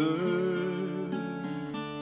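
Acoustic guitar strummed, its chord ringing under a long held melody note that ends near the end.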